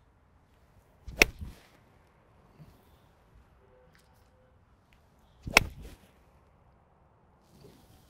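Two crisp strikes of a Callaway Rogue ST Max seven-iron on a golf ball, about four seconds apart. Each is a sharp crack with a brief tail as the club goes through the turf.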